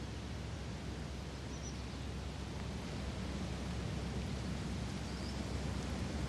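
Steady outdoor ambience on a golf course, an even background hiss with a few faint, high bird chirps.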